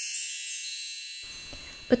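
A bright chime sound effect, many high tinkling tones ringing out together, fades slowly away. Near the end a woman's voice starts speaking.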